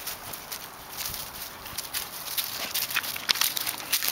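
Wolves' paws stepping and shuffling through dry fallen leaves: a run of short crackles and rustles that grows busier in the second half.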